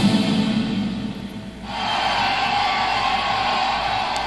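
Soundtrack music that thins out about a second and a half in, then a single held note.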